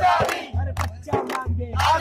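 A group of men chanting a protest song in loud short phrases, with a drum beating along.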